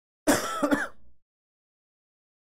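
A man clearing his throat once, a short rasping burst lasting under a second.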